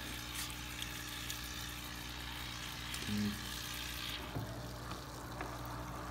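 Air stone bubbling in a plastic bucket of water: a steady fizzing with small splashes as a hand reaches in to reposition the stone. The fizzing drops away after about four seconds.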